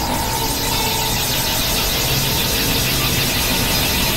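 Experimental electronic noise music: a dense, steady synthesizer drone with a low rumble under a hissing wash and a held tone near the middle.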